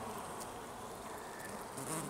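Honeybees crowding a comb frame of a nucleus hive, humming faintly and steadily.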